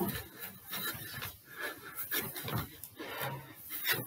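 Footsteps climbing an indoor staircase, about two steps a second.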